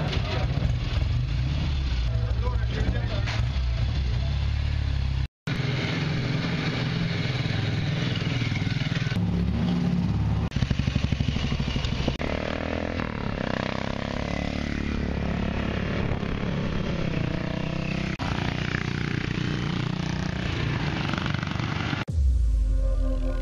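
Classic motorcycle engines running, revving and pulling away one after another, with voices in the background. The sound breaks off briefly about five seconds in.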